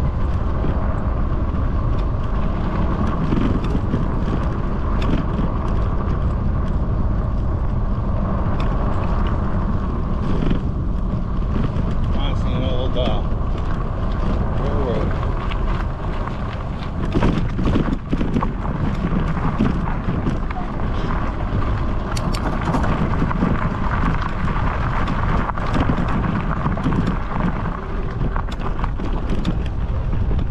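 Steady wind rumble on the microphone with tyres rolling over a gravel trail, recorded from a moving e-bike. A few sharp bumps come about seventeen seconds in as the bike crosses railway tracks.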